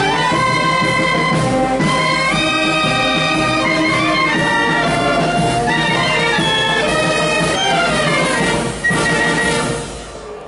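A wind band of flutes, clarinets, saxophones and brass playing a tune together in long held notes. The playing stops just before the end.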